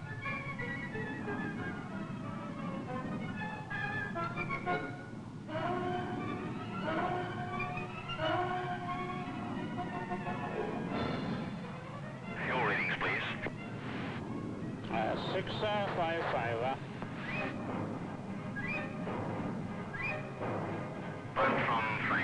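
Film score music with held notes moving step by step. From about twelve seconds in it gives way to short, wavering bursts of garbled, narrow-band voice, like radio transmissions.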